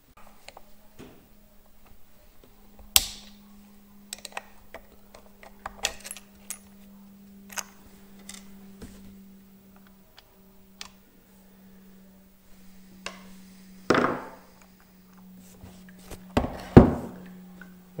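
Small metal parts clicking and clinking on a workbench as the worn drive sprocket, flat washer and retaining clip are handled off a Stihl MS 260 chainsaw, with a few louder knocks about 3 seconds in, around 14 seconds and near the end. A steady low hum sits underneath.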